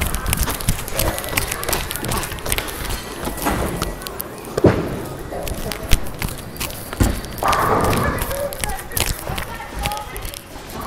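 Bowling alley din: steady clattering and knocking from balls and pins, with several loud single thuds about halfway through and voices and laughter over it.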